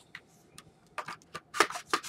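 Light metallic clicks and scrapes of a steel magazine being fitted into an SKS rifle: a few small ticks, then a quicker run of clicks near the end.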